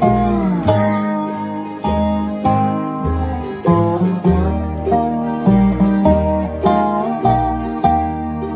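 Dobro (squareneck resonator guitar) played with a steel bar and finger picks, taking an instrumental bluegrass break: picked notes with the bar sliding between pitches, over a steady low bass line.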